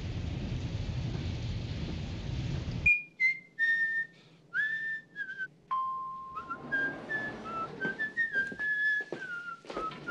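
Rain with a low rumble of thunder, which cuts off suddenly about three seconds in. A person then whistles a slow tune, one note at a time, stepping up and down, with one long held lower note near the middle.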